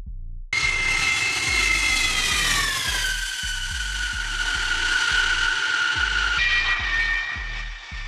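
Jet engine whine from a Lockheed C-5M Super Galaxy's four turbofans on approach. It starts suddenly about half a second in, falls slowly in pitch over several seconds and then holds steady near the end. Background music with a low, steady beat plays underneath.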